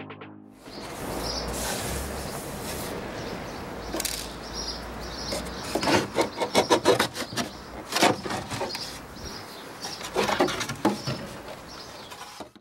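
Wooden pigeonhole insert of a writing bureau being worked loose and pulled out: wood rubbing and knocking on wood, with clusters of sharp knocks about six to seven seconds in and again near the end.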